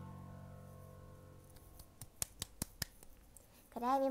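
The karaoke backing track's last sustained chord fades away. About two seconds in come five quick, sharp clicks, roughly a fifth of a second apart, which sound like close handling noise on the microphone. A young woman's voice begins near the end.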